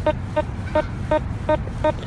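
Teknetics T2 Classic metal detector beeping with a short repeated tone, about six beeps in two seconds, as the coil is swept back and forth over a target. It is a strong, consistent signal from a silver dime buried about seven to eight inches deep.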